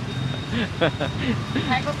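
Conversation and laughter at close range over a steady low hum of street traffic.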